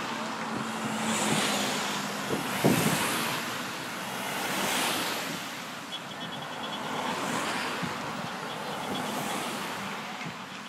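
Race convoy cars and vans driving past one after another on a country road, the noise swelling and fading about four times, with wind on the microphone.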